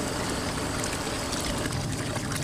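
A stick stirring simmering water and logwood dye in a galvanized trash can: a steady swishing of water.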